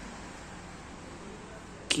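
Steady background hiss and hum of the room, with no distinct events. A man's voice starts suddenly right at the end.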